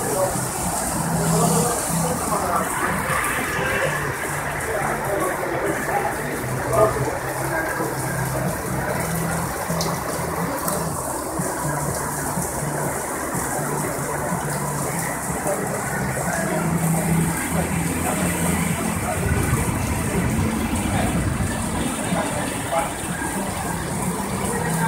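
Heavy rain of a sudden cloudburst pouring down steadily on the pavement and street, a continuous rush of falling water.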